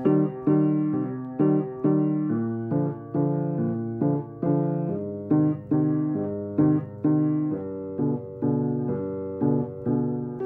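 Background piano music: notes struck about twice a second, each dying away before the next.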